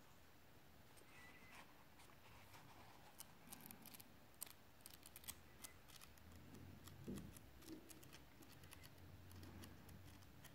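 Faint crisp ticks and rustles of thin book paper as the pages of a hardback are leafed through by hand.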